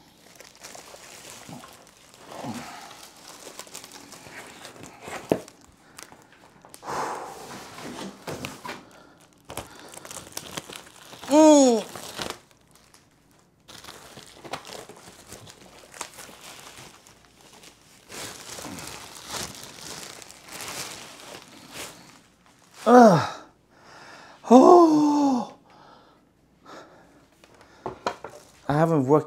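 Plastic packaging wrap crinkling and rustling in irregular spells as the parts of a new office chair are unwrapped. A man lets out three short wordless vocal sounds, one about eleven seconds in and two near the end.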